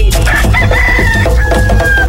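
A rooster crowing, one long call that drops slightly in pitch partway through, over a music bed with a steady beat.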